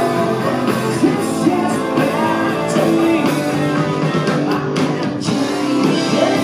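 A live rock band playing: distorted electric guitar and drums with cymbal crashes under a woman's lead vocal. The mix is loud and dense, as heard from the audience.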